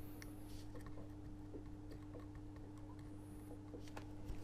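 Faint steady hum with a few soft, scattered ticks from fine metal tweezers placing coarse grass fibres along the rail of model railway track.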